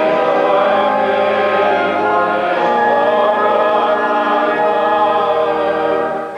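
Choral music: voices singing together in long held chords.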